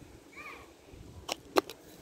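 A short, faint cat mew rising and falling in pitch, then two sharp clicks about a third of a second apart.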